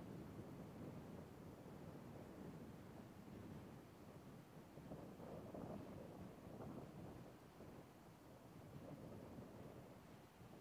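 Near silence: faint steady background noise, with no distinct sound.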